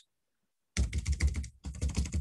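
Computer keyboard keys tapped in a quick run of presses, starting after a short stretch of total silence, with a brief pause near the end.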